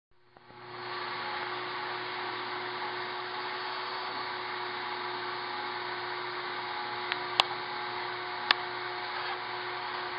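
Steady buzzing of a disturbed colony of Africanized honey bees, with two sharp clicks late on.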